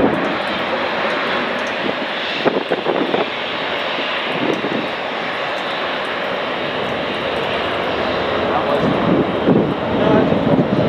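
Jet engines of a narrow-body twin-jet airliner at takeoff power, a steady rushing noise as it rolls down the runway and lifts off.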